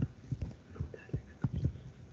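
Soft, irregular taps and knocks of a stylus on a graphics tablet as short pen strokes are written, about seven in two seconds.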